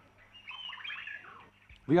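Birds chirping in a short run of quick calls that slide up and down in pitch, starting about a third of a second in and fading after about a second.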